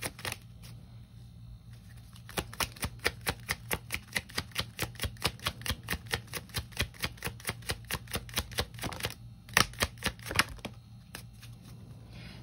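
A deck of tarot cards being shuffled by hand, giving a rapid run of light card clicks, about five a second. Near the end come two louder clicks.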